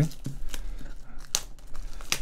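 Cellophane shrink-wrap crinkling and tearing as it is peeled off a cardboard phone box, in irregular crackles with one sharper crackle a little past the middle.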